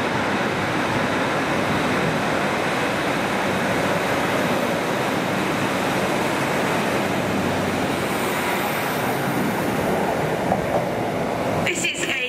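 A Northern Trains Class 156 Super Sprinter diesel multiple unit pulling out of the station and passing close by, its underfloor diesel engines and wheels on the rails making a steady noise. The sound cuts off suddenly near the end.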